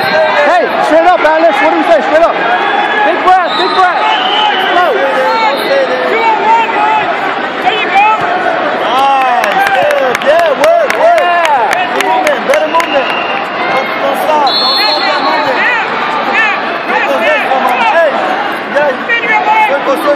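Spectators and coaches at a wrestling mat shouting and calling out to the wrestlers, many voices overlapping over the hubbub of a crowded arena.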